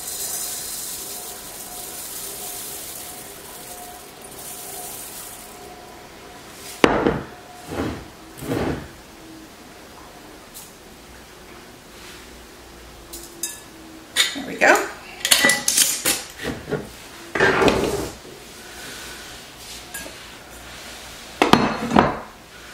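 Dry spelt grains pouring from a glass jar into a mixing bowl, a steady hiss for about six seconds. Then scattered knocks and clinks as the glass jar and bowls are set down and handled on the counter.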